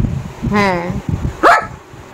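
German Shepherd dog giving a short, sharp bark about one and a half seconds in, with a woman's voice speaking to it briefly just before.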